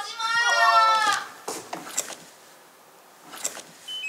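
A front door creaking for about a second as it is pulled and then pushed open, a door that sticks and has to be worked that way; a few faint clicks follow.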